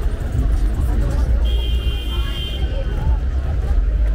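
Street ambience of a wet city road: a steady low rumble of traffic with passers-by talking. About a second and a half in, a thin high-pitched tone sounds for about a second.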